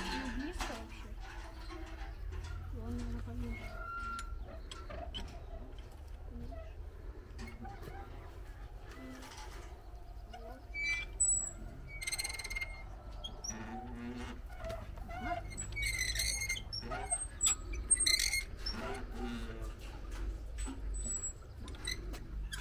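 Hand-cranked wooden well windlass turning as a bucket is wound up, with a few short high squeaks and light clicks from the crank and drum. Birds chirp faintly and quiet voices are heard.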